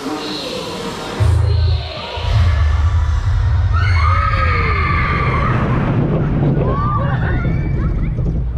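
Show soundtrack music in the dark scene, then from about a second in a loud, steady low rumble as the Gerstlauer family coaster train rolls backward along its steel track. Riders cry out and whoop over it.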